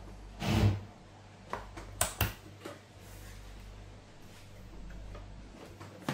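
Handling of a plastic smart battery charger: a knock about half a second in, then two sharp clicks about two seconds in as its push button is pressed to power it on, over a steady low hum.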